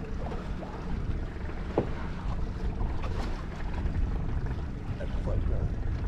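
Steady low wind and water noise aboard a small open fishing boat, with faint voices now and then.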